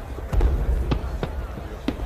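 Fireworks going off: a series of deep thumps and sharp cracks, the strongest about half a second in, over the murmur of a crowd.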